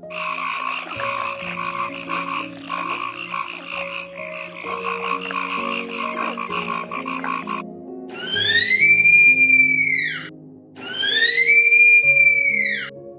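A frog croaking in a fast, dense pulsing chorus over soft background music; it cuts off suddenly about two-thirds of the way through. Then come two long, high whistled calls from a three-toed sloth, each rising, holding and falling over about two and a half seconds.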